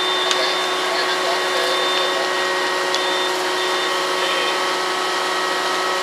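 Aerial ladder fire truck running steadily close by, its engine and pump holding a constant whine over a loud, even noise.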